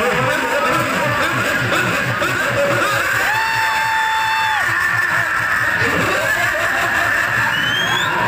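Amplified stage-show sound: music with a fast, even low beat and voices over it, one voice or instrument holding a long note about three seconds in.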